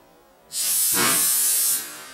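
Compressed-air gun charged to 120 psi firing a bamboo skewer: a sudden loud rush of hissing air about half a second in, lasting over a second before fading, as the balloon it hits bursts.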